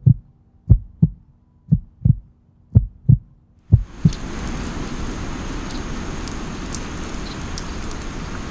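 Hape musical cloud nightlight playing its heartbeat sound: a low double thump about once a second, four times. About four seconds in it changes to its steady rain sound, with scattered drip ticks.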